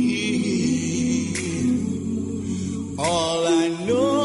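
A cappella vocal group singing sustained harmonies with no words. A higher lead voice with vibrato comes in about three seconds in.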